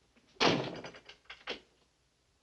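A door shut with a bang about half a second in, its sound dying away over half a second, followed by a couple of lighter knocks.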